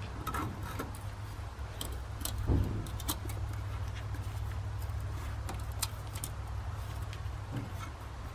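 Light metallic clinks and taps as the cleaned wire-screen element of a Caterpillar D2 air cleaner is turned and handled, with one duller knock about two and a half seconds in, over a steady low rumble.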